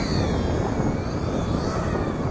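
Wind rumbling on the microphone, with the faint whine of a distant 1/18-scale electric RC truck's motor rising and falling as it is driven.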